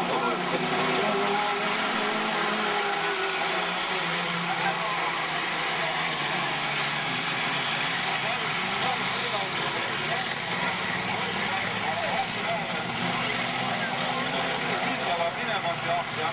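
Engines of a pack of autocross buggies racing together at high revs, many overlapping pitches rising and falling as the cars accelerate and shift.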